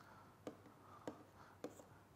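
Faint stylus writing on a pen tablet: a light scratching with three small ticks of the pen tip, about half a second apart.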